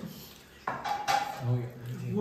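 Dishes and cutlery clinking on a dining table, with one sharp clink about two-thirds of a second in that rings briefly.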